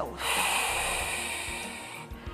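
A woman's long, audible exhale through the mouth, close to a clip-on microphone. It starts just after the beginning and fades away gradually over about two seconds: a deep Pilates out-breath that draws the belly in.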